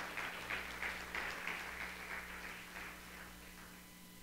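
Scattered applause from a congregation, thinning out and fading over a few seconds, over a faint steady low hum.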